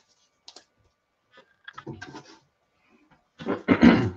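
Comic books in plastic sleeves being handled and put down: scattered clicks and crinkling, with a louder burst of rustling and knocks near the end.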